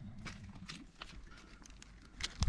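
Foals shifting their hooves on the dirt of a pen: a few faint, scattered light knocks and scuffs.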